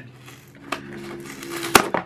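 Cardboard mailing box being handled and its flap pried open: rustling, a small click, then a sharp crack near the end as the cardboard gives.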